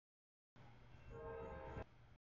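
Locomotive air horn sounding one short chord blast about a second in, over a low rumble, after a moment of silence.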